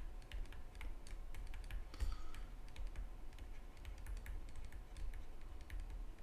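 Stylus clicking and tapping on a tablet screen while handwriting, a quick irregular run of light clicks over a low hum.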